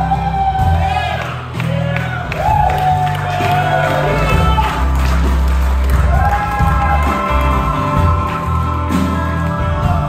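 Live rock band playing an instrumental break: a lead electric guitar solo of bent notes that swoop up and down in pitch, over bass and drums.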